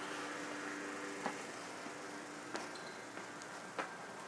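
Quiet outdoor street ambience: a steady background hiss with a low hum that fades out about a second and a half in, and three sharp clicks spaced about a second and a quarter apart.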